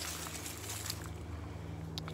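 A steady low mechanical hum, like a distant motor running, with a few faint ticks and rustles.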